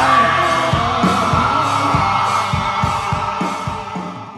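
Heavy metal band playing live: drums and electric guitars under a long held note, fading out near the end.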